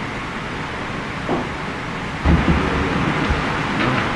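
Steady hiss of room tone in a legislative chamber, with a louder low rumble coming in about halfway through.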